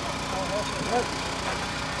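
A vehicle engine idling steadily, with people's voices over it during the first second.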